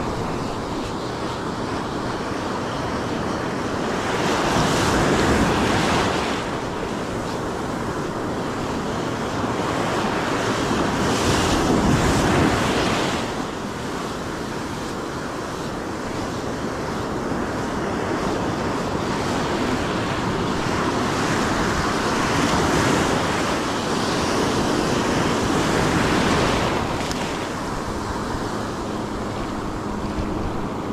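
Ocean surf washing onto the beach at high tide, a steady rush that swells louder several times as waves break.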